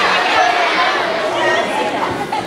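Many children chattering at once, a crowd of young voices talking over one another.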